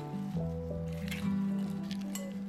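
Background music with held low notes, over the wet squish of romaine lettuce and croutons being tossed in creamy dressing in a glass bowl, loudest about a second in.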